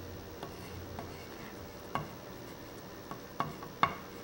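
Oil pastel rubbing across paper in coloring strokes, a faint scratchy sound, with a few light clicks of the stick against the paper and table.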